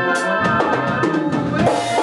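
Live band music: a drum kit beating time over electric bass and electronic keyboards playing held tones.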